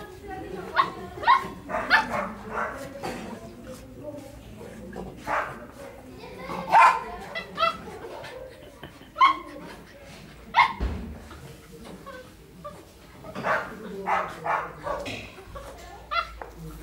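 Two small shaggy dogs play-fighting, with short barks and yips coming every second or two throughout.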